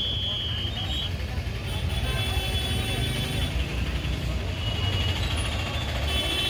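Road traffic: a steady low rumble of vehicle engines, with a brief high steady tone in the first second and voices in the background.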